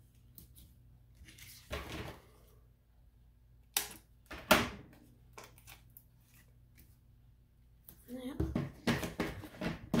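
Hands handling paper and a sheet of foam adhesive dimensionals on a craft mat: a soft rustle about two seconds in, two sharp crackling clicks around the middle, and more rustling near the end.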